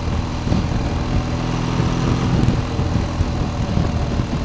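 Motorcycle engine running at a steady cruising pace, heard from the rider's seat with a constant rush of wind noise over it.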